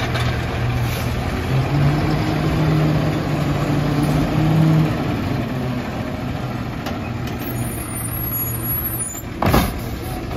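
Autocar WX garbage truck's engine running as the truck moves along, its pitch rising and holding for a few seconds before settling back, with a short, sharp burst of noise near the end as the truck comes to a stop.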